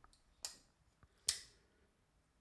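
TJ Fischer Launch flipper folding knife, its blade being flicked open and shut: two sharp metallic clicks, about half a second in and a louder one about a second later, as the blade fires and locks.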